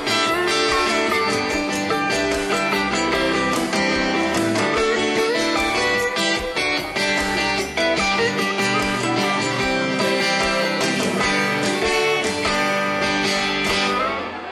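Live band playing an instrumental passage on electric guitars, with the lead electric guitar playing over the rhythm, steady and loud.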